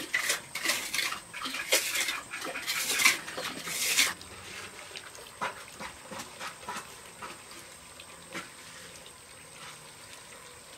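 Steel trowel scraping over wet cement mortar in quick repeated strokes as a floor screed is smoothed, stopping abruptly about four seconds in. After that only a quieter background with a few scattered faint clicks.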